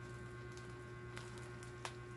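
Steady low electrical hum, with two faint short clicks a little over a second in and near the end.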